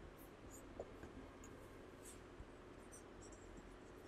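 Faint, irregular squeaks of a marker writing on a whiteboard, over quiet room hum.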